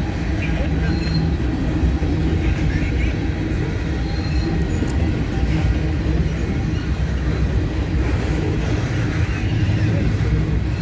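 Freight cars of a long, slow-moving freight train rolling past: a steady low rumble of steel wheels on jointed rail and car bodies, with no let-up.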